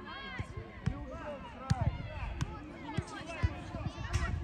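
Children calling out on a football pitch, with several sharp thuds of a football being kicked; the loudest come just before two seconds and about three and a half seconds in.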